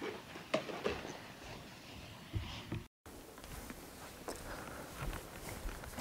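Faint footsteps and scattered light clicks and knocks from a person moving about and handling equipment, broken by a moment of dead silence about three seconds in.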